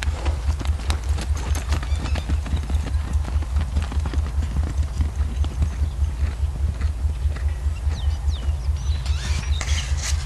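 Horse's hooves on dirt arena footing in a steady rhythm, low thuds about four times a second.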